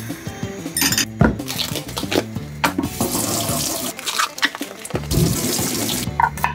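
Kitchen tap running into a stainless steel sink and over hands being washed, with a few sharp knocks in between, under background music.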